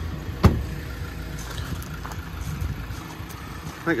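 Ford Transit Custom van's front door being shut, one sharp thud about half a second in, over a steady low background rumble.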